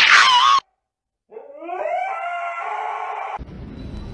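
A dog howling: one long howl, rising in pitch and then held, about two seconds long, beginning just over a second in. Right at the start there is a brief loud wavering sound lasting about half a second.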